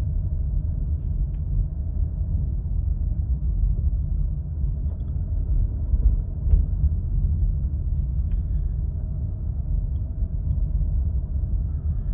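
Steady low rumble of a car's engine and tyres on the road, heard from inside the cabin while driving.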